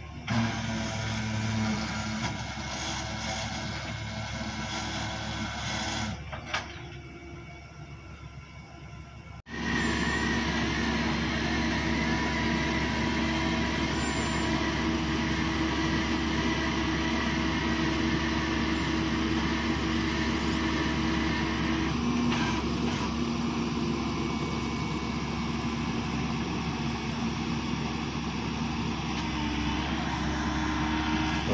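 Flatbed tow truck's engine running steadily at idle; the sound becomes louder and more even about a third of the way in.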